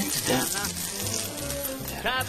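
Background music over bacon and onions sizzling on a hot griddle pan.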